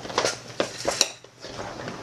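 A tape measure and a stiff waterproof roll-top bag being handled: several sharp clicks and clinks in the first second or so, with rustling of the bag's coated fabric.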